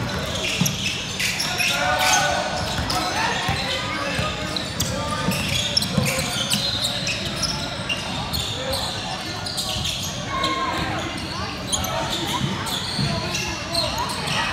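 A basketball being dribbled on a hardwood gym floor, bouncing repeatedly, with players' and spectators' voices echoing in the large hall.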